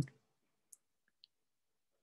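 Near silence with two faint, short, high-pitched clicks about half a second apart, just after a voice stops at the very start.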